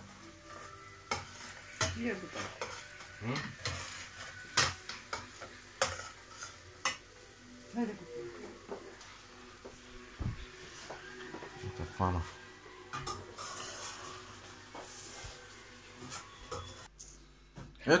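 A metal spoon stirring chicken gizzards with onions in a stainless-steel pot, giving scattered clinks, knocks and short scrapes against the pot over a light sizzle of frying.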